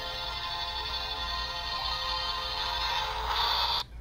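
Animated Santa Jack Skellington plush toy playing a song through its built-in speaker, stopping abruptly near the end.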